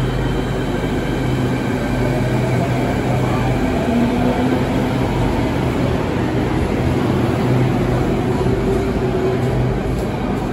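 Beijing Subway Line 5 train running along the platform behind the platform screen doors: a loud, steady rumble with a low hum and a motor whine that rises in pitch through the middle.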